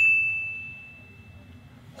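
A single bright ding from a phone's message notification chime, struck once and fading away over about a second and a half, signalling a picture message sent or received.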